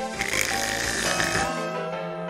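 Anime episode soundtrack: background music with steady held tones, and a rushing sound effect that starts just after the opening and fades out about halfway through.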